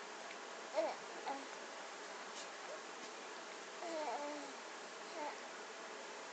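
A baby making a few short, soft vocal sounds, small coos and grunts, about a second in, around four seconds in and once more near the end, over a steady background hiss.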